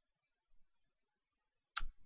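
Near silence, then a single short click near the end.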